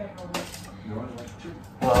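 Metal kitchen tongs clicking and scraping against a metal baking tray as cooked bacon is lifted out, a few light, irregular clicks.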